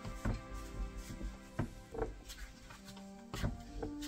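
Soft background music with steady held notes, with a few light knocks and taps from hands working cookie dough on a plastic cutting board.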